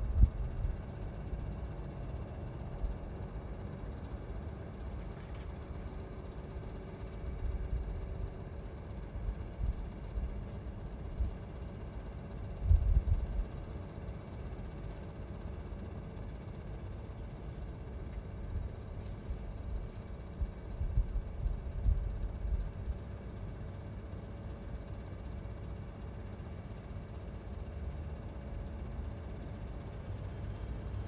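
Outdoor ambience: a steady low rumble with a few irregular, stronger low-pitched surges.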